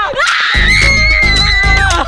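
A young woman's long, high-pitched scream of triumph, held for over a second, over background music with a steady beat.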